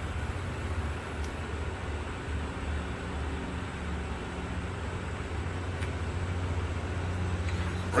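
A steady low mechanical hum, even in pitch throughout.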